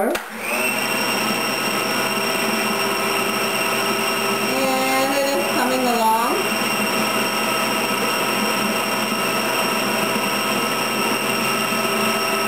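Food processor motor switched on just after the start and running steadily with a whine, its plastic dough blade kneading whole wheat flour and water into roti dough.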